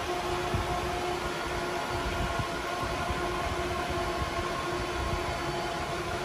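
Cooling fans of running HPE ProLiant DL580 Gen9 servers: a steady rush of air noise with several steady whining tones over it.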